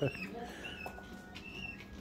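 Pet chickens giving a few faint, short high-pitched chirps over low room noise.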